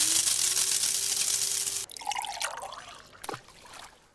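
Coffee pouring into a mug as an intro sound effect, the pitch of the filling rising as the cup fills, stopping abruptly about two seconds in. Fainter sounds follow, with a single tap a little after three seconds.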